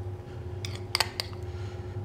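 A metal spoon clicking against a small bowl a few times about a second in, as stuffing is scooped out. A steady low hum runs underneath.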